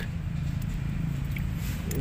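A steady low mechanical hum, like a distant engine, with a few faint ticks.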